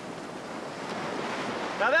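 Surf washing up the sand at the water's edge, a steady rushing that builds slightly toward the end.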